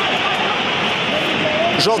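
Steady rushing stadium ambience on a football match broadcast, with a few faint voices in it and a commentator starting to speak at the very end.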